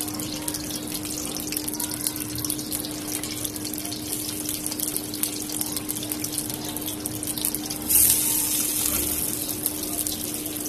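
Potato pinwheels frying in oil in an aluminium karahi: a steady sizzle with fine crackling. About eight seconds in it flares into a sudden louder hiss that dies down over a couple of seconds.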